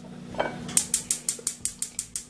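Rapid, even clicking, about eight clicks a second, starting about three-quarters of a second in, over a steady low hum.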